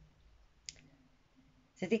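A single short, light click in an otherwise quiet pause, then a woman starts speaking near the end.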